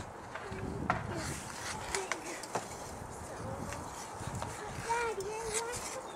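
Skate blades and a skating-aid frame scraping and tapping across ice: a low steady hiss with a few sharp clicks. A child's short high voice sounds near the end.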